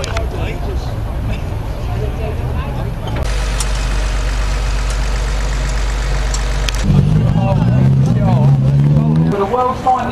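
Banger-racing car engines running in the pits, with voices around. A steady low engine hum fills the middle, then a louder engine note rises and falls near the end.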